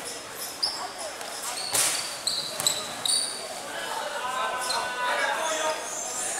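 A basketball knocking on a hard outdoor concrete court, a few sharp knocks with the loudest a little before halfway, as a player handles the ball at the free-throw line. Young players' voices rise near the end.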